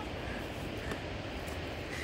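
Steady low rumble of wind on the microphone, with a faint tap about a second in.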